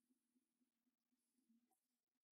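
Near silence, with only a very faint low hum.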